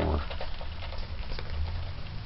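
Goose eating feed pellets from a bowl: soft, irregular clicks and rustles as its bill picks through the pellets, over a low steady rumble.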